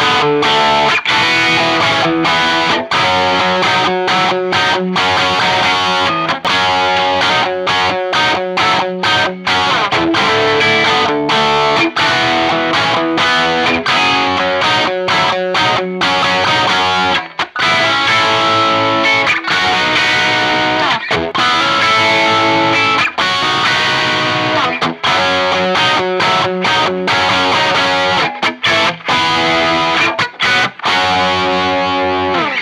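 Electric guitar phrases on a Gibson Les Paul R9 played through a Marshall Studio Vintage head and a 1960B 4x12 cabinet. The first half is on a 2008 Gibson Burstbucker II humbucker; after a brief break about halfway, the same kind of playing is on a 1970s Gibson T-Top humbucker.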